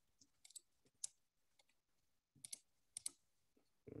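Faint clicking at a computer: about five short clusters of clicks as the slideshow is being pushed to the next slide.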